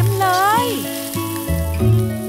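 A cartoon effect of a cascade of objects pouring out: a fizzing, crackling hiss with a swooping pitch glide in the first half, over background children's music with steady sustained notes.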